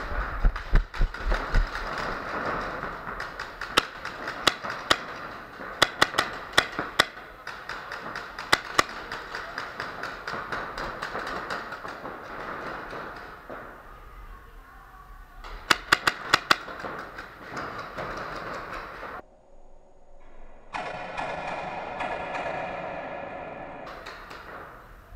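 Paintball markers firing in an indoor arena: sharp pops, some single and some in quick strings of three to five, over a steady wash of hall noise. The sound cuts out suddenly about nineteen seconds in, and a steadier sound with layered tones follows.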